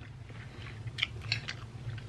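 A few faint, short mouth clicks over a low steady hum during a pause in talking.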